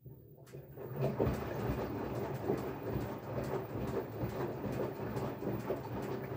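LG front-loading washing machine running, its drum turning with a dense, irregular clatter of knocks over a low rumble that starts from silence and builds up within the first second.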